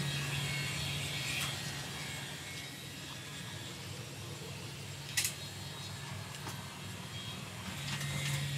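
Steady hum and hiss of the ventilation fans and equipment inside a space station module, with one short click about five seconds in.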